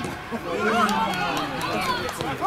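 Several voices calling and talking over one another, players and spectators at a football match, while play runs on.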